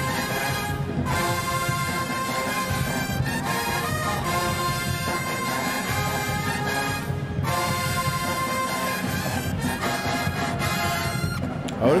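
HBCU pep band brass section, trumpets and sousaphones, playing loud held chords together. The whole band cuts off briefly about a second in and again about seven seconds in.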